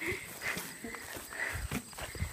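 Footsteps on a dirt and grass track, with a few soft thuds in the second half.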